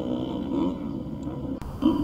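An engine idling steadily with a constant low drone and no revving.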